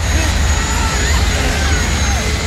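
A hovercraft's engines and lift fans running hard in a film soundtrack: a steady deep rumble under an even rush of air noise that holds level throughout.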